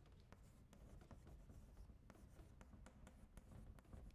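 Faint chalk writing on a blackboard: a run of small, irregular taps and scratches.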